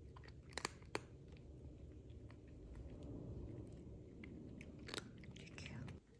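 A cat chewing and crunching a dry kibble treat: a string of small crisp crunches, with sharp louder ones about half a second in, about a second in and again near five seconds.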